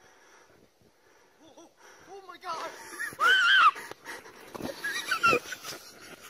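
Wordless high-pitched human yells: short calls that build to one loud, long shriek about three seconds in, with a few shorter calls after it.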